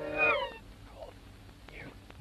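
Cartoon soundtrack played backwards: the band music ends in a short falling, meow-like slide about half a second in. Faint squeaky gliding sounds follow.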